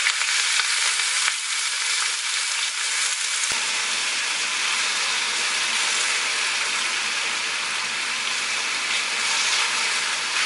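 Beech mushrooms sizzling in a hot wok with a little oil, a steady loud hiss as a spatula stirs them. The sizzle is the mushrooms' own water boiling off; mushrooms hold a lot of water.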